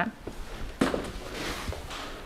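Soft rustling handling noise with a light knock a little under a second in.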